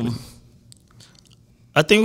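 A man's trailing "um", then a pause of about a second with a few faint mouth clicks close to a studio microphone, before his speech starts again near the end.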